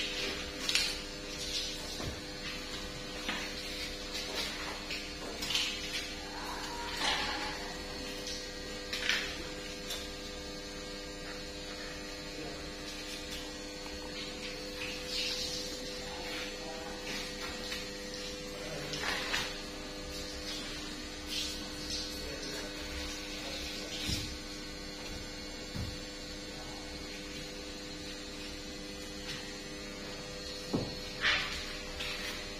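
Knife work on a large whole tuna: scattered short scrapes and knocks as the blade cuts and the fish is handled, fewer toward the end. Under them runs a steady electrical hum.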